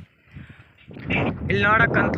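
Wind buffeting the microphone, starting about a second in after a short lull, with a man's voice beginning over it about halfway through.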